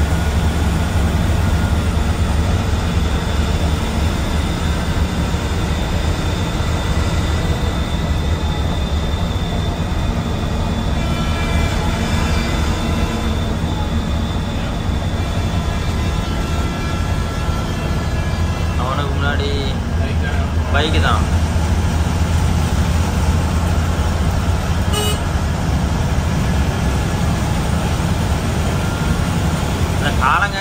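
Steady low drone of a bus's engine and road noise, heard from inside the cabin at highway speed. About two-thirds of the way in, two short pitched sounds rise above it.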